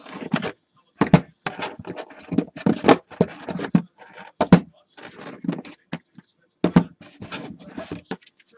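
A cardboard case of trading-card boxes being opened and handled: irregular scratching, scraping and tearing of cardboard and tape, with a few dull knocks.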